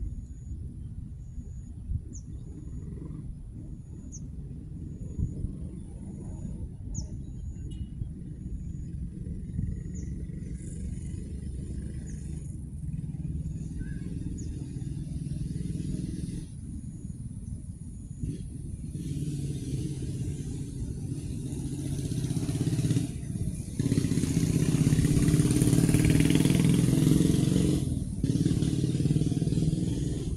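A steady low outdoor rumble, with a motor vehicle's engine growing louder over the second half and loudest a few seconds before the end.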